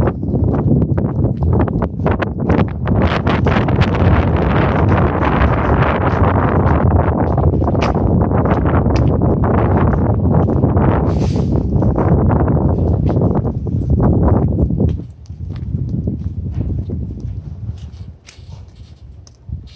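Wind buffeting the phone's microphone: a loud, gusty rumble with scattered clicks from handling and footsteps, which drops away sharply about three seconds before the end.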